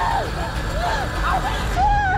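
Wordless human cries and shouts in a struggle: several short voices rising and falling, overlapping one another, over a steady low rumble.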